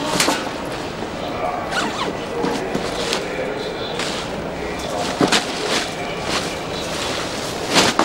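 Rustling and handling of a bag and the items packed in it, with a few sharp knocks, over indistinct background voices.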